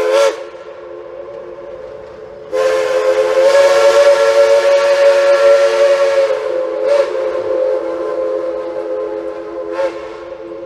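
Heisler steam locomotive's chime whistle sounding a steady chord in long blasts: a loud blast that cuts back just after the start, a softer held tone, then loud again for about four seconds before easing to a softer tone with two short swells near the end.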